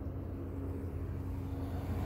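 Steady low vehicle rumble with a faint constant hum.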